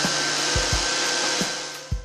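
Steady loud rush and hiss of compressed air driving a prototype rotary vane expander engine on a test bench, with the air compressor running. A few short low thumps sound through it, and the hiss fades away in the last half second.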